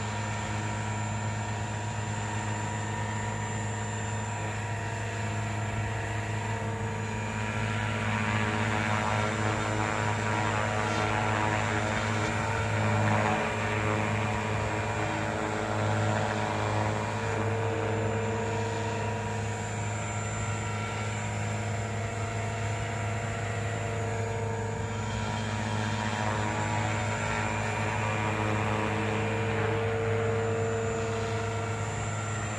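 JR Forza 450 electric RC helicopter hovering: a steady drone of rotor blades and motor whine that swells a little and eases back as it turns.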